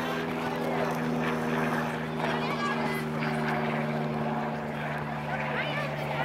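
A steady, engine-like mechanical drone holding a few even tones, with faint shouting voices over it.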